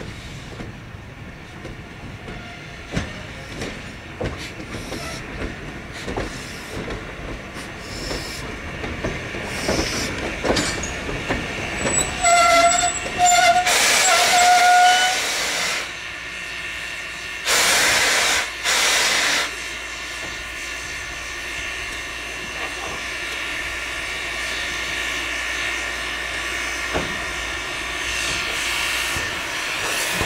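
JS class 2-8-2 steam locomotive at work in the yard: clanking and knocking over a low rumble, then three short pitched toots about halfway through. Two loud bursts of steam hiss follow, a second or two each, and the locomotive settles into a steady hiss of escaping steam.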